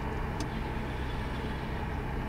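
Steady low hum inside the cabin of a Bentley Continental GT Speed as it idles, with a faint click about half a second in as the dashboard's rotating display turns from the touchscreen to the three analogue dials.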